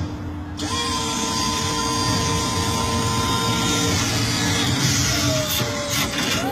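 Motorized transforming mechanism of the Letrons robot car (a converted red BMW coupé) whining as its panels open and the body lifts onto its legs. A steady whine sets in about a second in and holds for about three seconds, then a second, lower whine sets in near the end, falling slightly in pitch.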